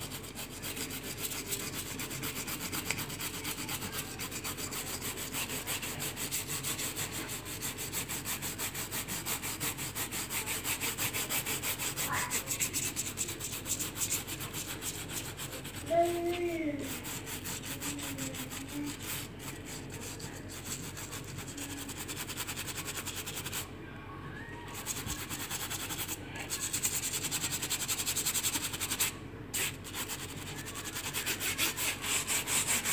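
Sponge scrubbing an aluminium-mesh cooker-hood grease filter in fast back-and-forth strokes, a continuous raspy rubbing that breaks off briefly twice near the end. The filter is being degreased with a diluted soap-nut solution. Just past halfway a brief pitched squeak is the loudest sound.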